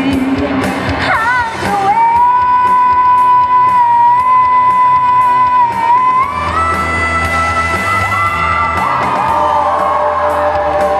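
A woman singing rock into a microphone over a band backing, holding one long high note for about four seconds and then stepping up to another held note, with a steady cymbal beat and bass underneath.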